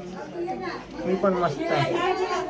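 Several people talking at once, overlapping background chatter of voices.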